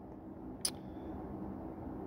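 Faint steady background hum, with one short sharp click about two-thirds of a second in.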